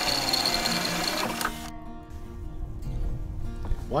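Cordless drill boring a hole through a black metal shelf bracket: a high motor whine with a grinding hiss that stops abruptly about a second and a half in.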